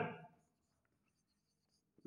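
Faint marker pen writing on a whiteboard: a few light, soft strokes, after a man's voice trails off at the start.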